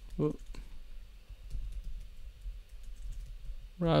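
Typing on a computer keyboard: a run of quiet, irregular key clicks as a line of code is typed.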